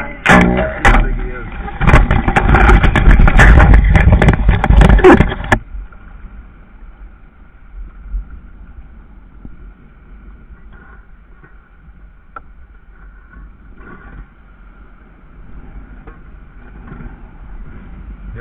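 Loud rustling and clattering close to the microphone for the first five and a half seconds, full of sharp clicks, then only faint background noise.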